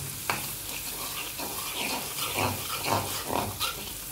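Minced garlic sizzling in melted butter in a pan as a metal spoon stirs it, with a couple of sharp clicks of the spoon against the pan near the start. Intermittent low, voice-like pitched sounds come through the sizzle in the middle.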